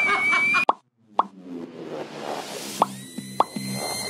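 Intro sound effects: four short pops, spaced unevenly, over a swelling whoosh. A steady high electronic tone comes in near the end, leading into electronic intro music.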